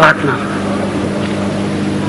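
A steady low hum with a hiss underneath it, the background noise of an old stage recording picked up through the sound system, after a short vocal exclamation at the very start.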